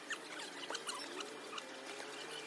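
Thin plastic bags crinkling and rustling in quick, irregular crackles as bags of pancakes are handled.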